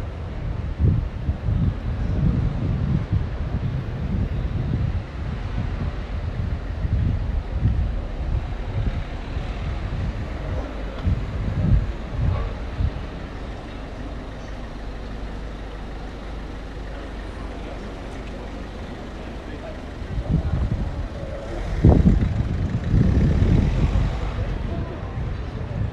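City street ambience: traffic and passers-by talking, with irregular low rumbles of wind buffeting the microphone, strongest near the end.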